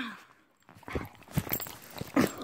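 A German Shepherd jostling against the phone at close range: scattered knocks and rubbing of fur on the microphone.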